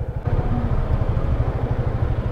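Motorcycle engine idling with a steady, even low beat, growing a little louder a quarter of a second in.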